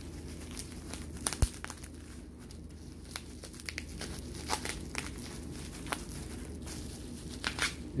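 Clear plastic bubble wrap crinkling and crackling as it is pulled off a glass candle jar, with scattered sharp clicks; the sharpest comes about one and a half seconds in.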